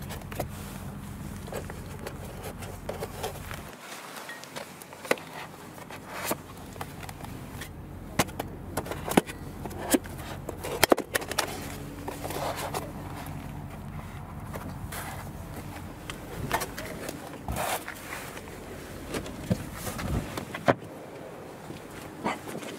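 Steel scissor jack and lug wrench being handled and pressed into a foam storage tray: irregular metal clicks and knocks, with short rubbing squeaks of the foam.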